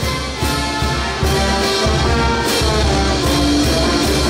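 A live brass band playing a festive tune, with sustained brass notes over a steady drum beat.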